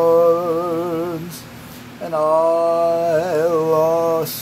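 A man singing unaccompanied, holding long notes with vibrato: one held note that fades out about a second in, then after a short breath another long held note from about halfway.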